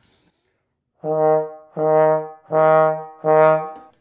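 Trombone playing four repeated notes on the same low pitch, each begun and released with the air alone rather than the tongue (air starts). The notes begin about a second in, each held about half a second with short breaks between them.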